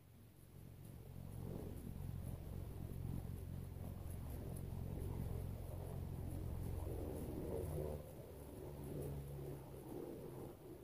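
Dairy cows lowing: a long, low drawn-out moo from about a second in, fading near the eight-second mark, then a shorter moo just after.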